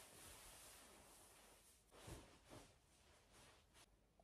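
Near silence: room tone in a small room, with a few faint, soft knocks or rustles in the second half.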